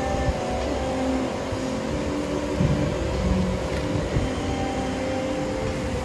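Steady low rumble with a constant hum, typical of a large store's ventilation and air-handling system, with brief faint pitched sounds drifting underneath.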